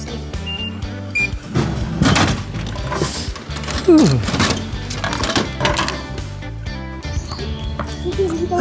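Drinks vending machine's e-money card reader giving two short high beeps as a smartwatch is held to it, accepting the payment. Then a plastic water bottle drops into the dispensing tray with a couple of knocks and is pulled out with a sharp clunk, over background music.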